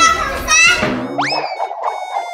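Young children shrieking and calling out as they ride down a plastic slide, followed about a second in by a cartoon-style sound effect: a quick rising whistle, then held tones stepping down in pitch.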